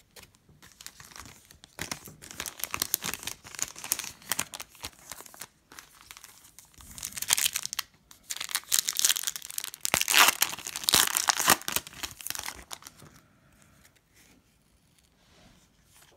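Shiny foil trading-card pack wrapper being torn open and crinkled by hand, loudest in the middle, then only faint rustling in the last few seconds.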